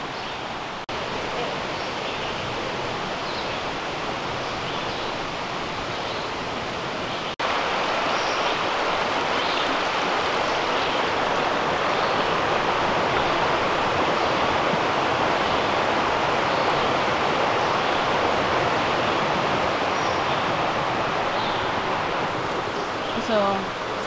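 Steady rushing of a woodland stream, jumping up in level about seven seconds in, with faint high chirps scattered over it.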